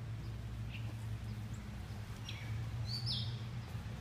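A few short bird chirps, one falling in pitch, over a steady low hum.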